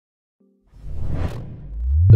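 Intro whoosh sound effect: a rushing swish that swells to a peak just over a second in, then fades into a low rumble that builds toward the opening chord of the intro music.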